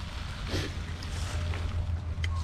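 Wind buffeting the microphone during a bicycle ride, a steady low rumble, with the bicycle's tyres rolling over leaf-covered ground; a brief rustle about half a second in.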